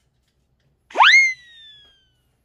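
A cartoon 'boing' sound effect: about a second in, one quick steep upward pitch sweep, then a slow downward slide that fades out.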